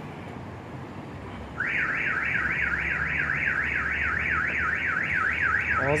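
Car alarm siren starting about one and a half seconds in, a warbling tone rising and falling about four times a second, over low street noise.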